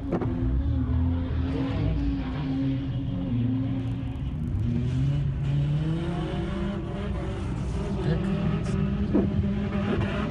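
Car engines revving hard as cars drift in the street, engine pitch repeatedly rising and falling.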